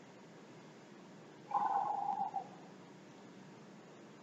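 A weightlifter's short strained grunt during a barbell rep, lasting about a second and starting a little before the middle, over a steady faint hiss.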